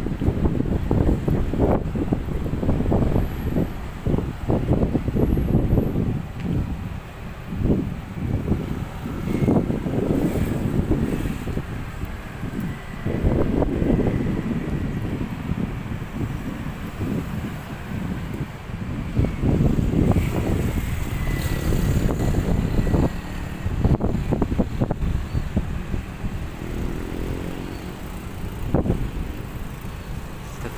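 Gusty wind buffeting the microphone in uneven surges, mixed with road traffic passing on the street alongside.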